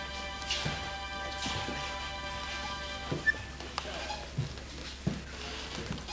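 Accordion holding a sustained chord that dies away about halfway through, with scattered knocks and shuffles of dancers' feet on the studio floor, the sharpest about three seconds in.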